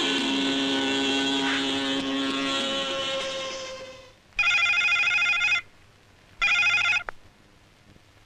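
Film background music fades out, then a landline telephone rings twice. The second ring is cut short, and a click follows as the handset is lifted.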